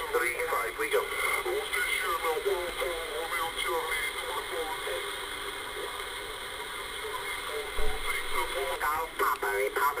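Upper-sideband voice from other stations coming through the HR 2510 radio's speaker: narrow, telephone-like speech over steady static, weaker in the middle seconds. A single low thump comes about eight seconds in.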